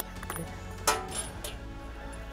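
A few sharp metallic clicks from the Thompson/Center Compass bolt-action rifle's bolt being worked, the loudest about a second in, over steady background music.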